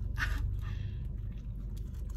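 Two people eating wraps: bites, chewing and the rustle of tortilla and wrapper, with a short rustle just after the start, over a steady low hum inside the car.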